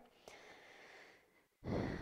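A woman breathing audibly during a cat-cow stretch: a long, soft breath, then a short, louder breath near the end.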